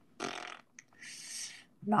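A person's breath through the microphone during a hesitant pause: a short puff of breath out, then about a second later a softer, higher hiss.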